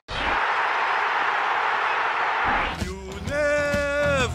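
A loud, steady rushing noise for about two and a half seconds, then a song begins: a man's voice singing long held notes.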